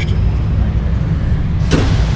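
Steady low rumble of background noise, with a single sharp click near the end.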